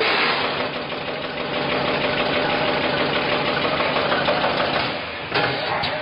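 Automatic coffee-capsule bag-packing machine running, with a steady, dense mechanical noise that eases off near the end. A sharp knock follows about five seconds in.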